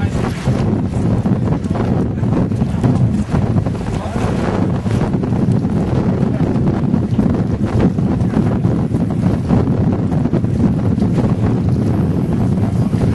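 Wind buffeting the camera microphone in a steady, loud rumble over open water.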